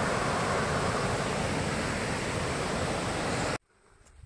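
Jungle stream rushing over rocks in white water, a steady, even rush that cuts off abruptly about three and a half seconds in.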